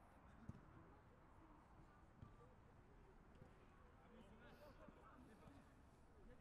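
Near silence: faint, distant voices of football players calling out on the pitch, with a couple of soft thumps.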